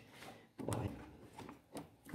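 Faint handling sounds of a Jacto pressure-washer spray gun being reassembled: plastic and brass parts rubbing, with a few light clicks as the spring-loaded valve assembly is pushed into the gun's plastic housing.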